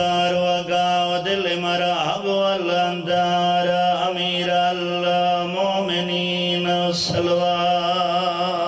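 A man's voice chanting in long, slowly bending held notes through a microphone and sound system, in the melodic recitation style of a majlis zakir.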